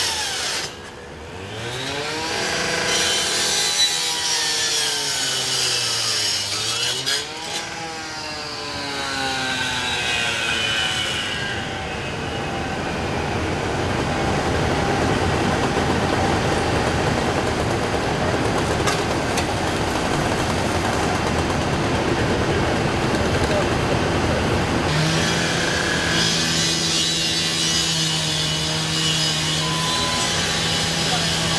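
Power saw cutting into a burned car's metal body, its motor pitch dipping and climbing again several times as the blade bites and frees, over about the first ten seconds. A steady dense rushing noise follows, and a steady hum comes in near the end.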